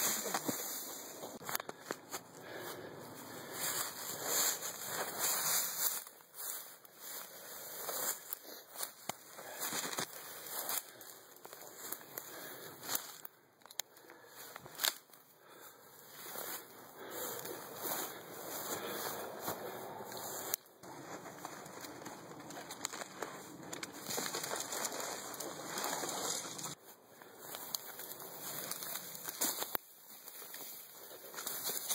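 Dry grass or reed stems rustling and crackling as someone pushes through them, with many short clicks and scrapes. Several brief quieter pauses.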